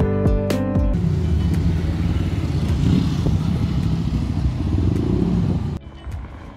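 Background music stops about a second in, giving way to the steady engine and road noise of a moving bus heard from inside the cabin. The noise drops away suddenly near the end.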